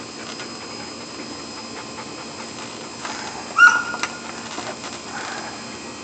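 A dog gives one short, high whine about three and a half seconds in, loudest of all, with a fainter whimper about a second and a half later, over a steady hiss and hum.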